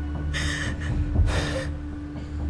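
A young woman crying: two sharp, breathy sobbing gasps about a second apart, over soft steady background music.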